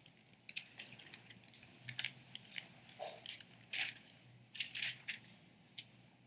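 Faint paper rustling as thin Bible pages are leafed through to a passage: a string of short, irregular rustles and flicks.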